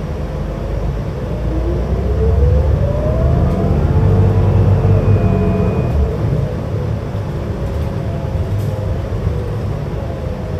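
New Flyer XD60 articulated diesel bus heard from inside the cabin while under way: engine and drivetrain rumble with a whine that rises in pitch as the bus picks up speed over the first few seconds, then levels off and eases around the middle.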